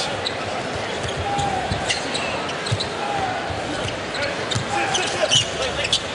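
A basketball being dribbled on a hardwood court, with scattered knocks and squeaks over the steady noise of a large arena crowd.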